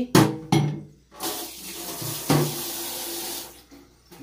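Kitchen tap running into a stainless-steel sink for about two seconds, after a couple of short knocks just after the start.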